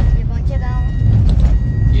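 Steady low rumble of road and engine noise inside the cabin of a moving Nissan Magnite.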